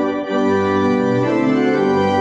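Church organ playing the introduction to a hymn: held chords that move from one to the next.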